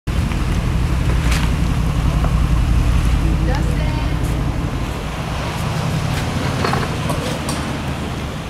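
Low, steady rumble of an SUV's engine as it drives slowly away, with a few sharp clicks and faint voices over it.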